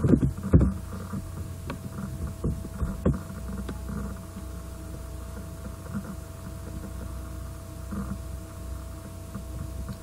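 Steady low electrical hum with a thin steady tone above it, the background noise of a desktop recording setup. A few sharp clicks and knocks come in the first three seconds, from the mouse and desk being handled.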